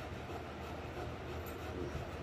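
Steady low hum and background noise of the room, with no distinct event.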